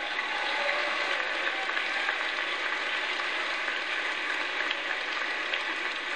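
A large congregation applauding steadily in a big hall, with a few voices faintly mixed in near the start.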